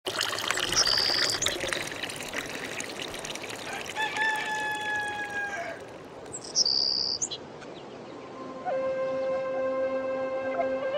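Water from a pipe spout pouring and splashing into a stone trough, with two short high bird calls about a second in and about seven seconds in. A held pitched tone sounds around the middle, and a wavering, flute-like music line comes in about eight and a half seconds in.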